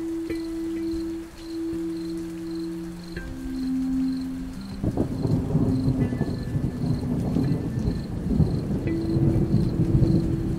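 Soft, slow held notes of sleep music over rain. About five seconds in, a rumble of thunder rolls in and lasts around four seconds, the loudest sound here, before the held notes return.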